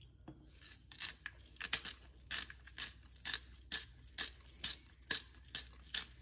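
McKenzie's whole black peppercorn grinder bottle being twisted, cracking peppercorns with a run of quick crunching clicks, about three to four a second.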